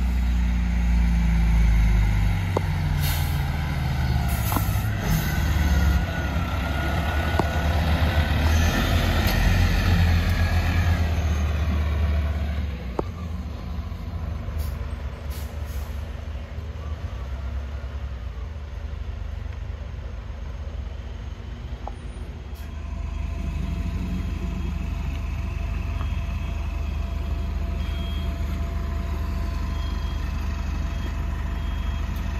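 Diesel fire apparatus running under way, a loud low rumble for about the first twelve seconds, with a few short air hisses typical of air brakes. It then drops to a quieter, steady diesel engine idling.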